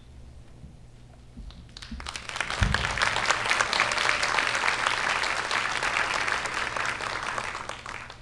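A theatre audience applauding. The clapping builds about two seconds in, holds steady, then dies away near the end. A single low thump comes just as the applause starts.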